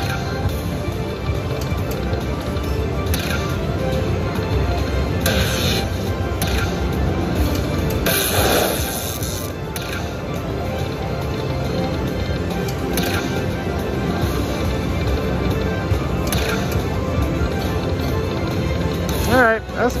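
Aristocrat Dollar Storm slot machine playing its free-spin bonus: steady game music with sharp hits as reels stop and coin symbols land, one longer burst near the middle, over casino background noise.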